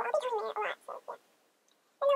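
A high-pitched voice in a few quick syllables lasting about a second, too garbled to be caught as words.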